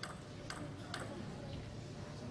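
A table tennis ball bouncing a few times, light sharp clicks about half a second apart, in a hushed hall.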